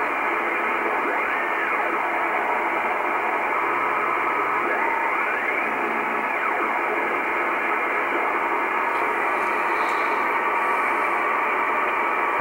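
Icom IC-R8500 receiver in lower-sideband mode giving out steady shortwave static as it is tuned slowly around 24.78 MHz. The hiss sounds narrow and muffled, and a few faint whistling tones slide in pitch as the dial turns.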